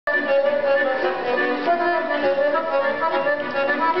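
Piano accordion playing a lively folk melody over chords.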